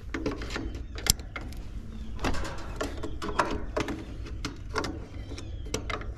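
Scattered clicks and small knocks of a hand tool being worked in the electrical compartment of an outdoor air-conditioner condensing unit, over a steady low hum.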